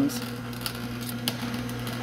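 Nama J2 slow juicer running with a steady hum, its auger crushing produce in scattered short crackles and snaps.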